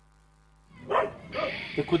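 Near silence, then a little under a second in, a man's voice starts praying loudly in Hindi-Urdu as hands are laid on the sick man.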